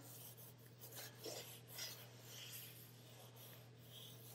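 Paper towel wiping oil around the inside of a 15-inch cast iron skillet: faint, irregular rubbing strokes.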